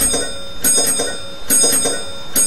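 A bell struck in quick pairs, ding-ding, about once a second, its high ringing tones carrying on between strikes.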